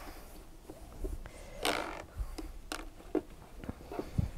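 Handling noises of an embroidery hoop being turned around and refitted: a few light clicks and knocks, with a brief rustle or scrape about a second and a half in.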